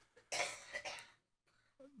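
A short cough: a breathy burst about a third of a second in, then a smaller second one, dying away within a second.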